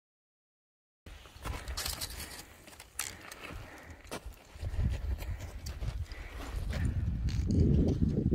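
Footsteps crunching and trekking-pole tips clicking on loose rock and scree, in irregular sharp knocks that start about a second in. Wind buffets the microphone with a low rumble that grows stronger near the end.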